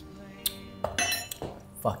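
A metal spoon clinking a few times against a stainless steel mixing bowl and then being set down, one clink ringing briefly.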